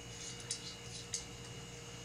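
Faint small clicks of a 1.25-inch light pollution filter being handled and threaded onto a ZWO T2-to-1.25-inch filter adapter ring, the clearest about half a second and a second in, over a steady electrical hum.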